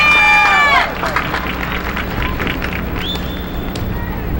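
Stadium crowd cheering and clapping: loud held shouts break off under a second in, then scattered applause with claps, and one long whistle near the end.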